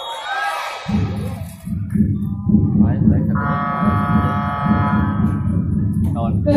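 Sports-hall game buzzer sounding one long steady tone for about two and a half seconds, starting about three seconds in, over the noise and voices of the crowd in the hall.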